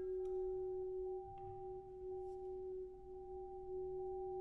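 Contemporary chamber ensemble music: a single pure, steady tone held quietly, almost like a sine wave, with faint higher overtones fading out in the first second and a couple of faint clicks.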